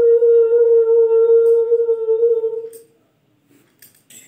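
A woman humming one long, steady note that fades out about three seconds in.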